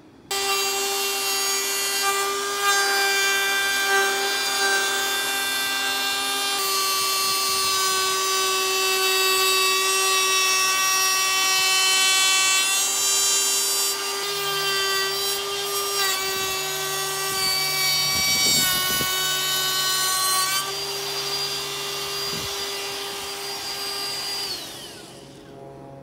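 Ryobi 18V cordless trim router running with a steady high whine as it trims the overhanging plywood gussets flush with the wooden rudder frame. Its pitch steps a few times as the cut loads it, and it winds down near the end.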